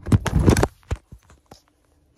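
Phone handling noise: a burst of knocks and rubbing right on the microphone as the handheld phone slips and is caught, followed by a few separate clicks.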